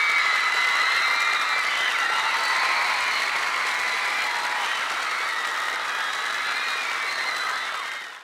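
Studio audience applauding and cheering, with high-pitched shouts, slowly fading.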